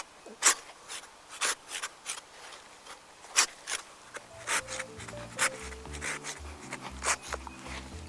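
Hand pruning saw starting the final cut through a branch stub at the branch bark collar: short, irregular strokes of the blade through the wood, a couple each second.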